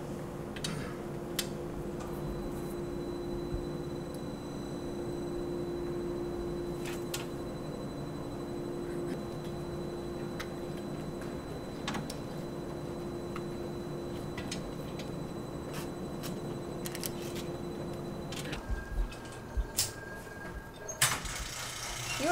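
A steady machine hum with a low tone, with scattered light clicks and knocks of metal hardware being handled. The hum stops about three-quarters of the way through.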